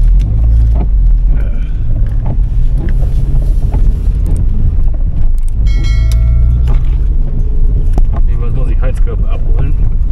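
Steady low engine and road rumble heard from inside a moving car's cabin. About six seconds in there is a short chime lasting under a second.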